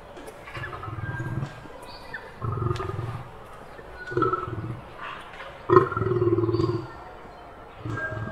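A lion growling: about four low growls, each under a second long, the loudest starting sharply near the end and lasting about a second.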